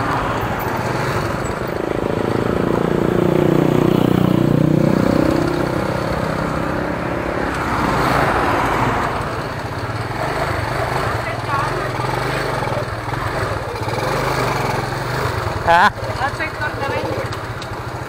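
Motorcycle engine running under way, its revs rising from about two seconds in and loudest a few seconds later, then settling to a steady run with road noise.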